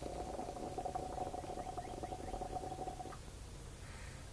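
A hit drawn through a small glass pipe: a steady whistling tone with fast crackling underneath for about three seconds, cutting off when he stops inhaling.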